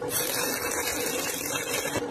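Stick-welding arc crackling and hissing as an electrode runs a bead along a steel corner joint, stopping near the end.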